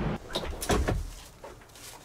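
A few short clicks and knocks in the first second, then a quieter stretch.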